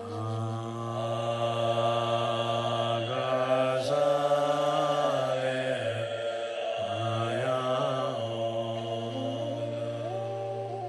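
A man chanting a Tibetan Bon mantra in a low voice, holding long syllables that step to a new pitch every few seconds.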